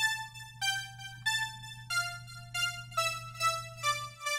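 KiloHertz The One software synthesizer playing a melody of bright notes, a new pitch about every 0.6 s, each striking and fading, over a low steady bass note. This is the patch's unprocessed original sound.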